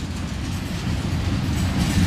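Freight train cars rolling past on the rails, a steady low rumble of wheels on track.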